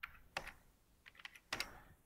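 A few faint, sharp clicks of keys being pressed on the keypad of an ETC Cobalt lighting console, entering a channel selection.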